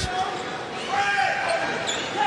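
Basketball arena ambience: crowd murmur with a ball being dribbled on the hardwood court.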